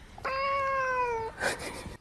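A domestic cat giving one long meow, about a second long, its pitch arching slightly and dropping at the end.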